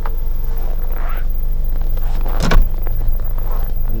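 Powered tailgate of a 2016 Audi Q3 closing on its motor after a one-touch press of the close button. It shuts with a single thump about two and a half seconds in.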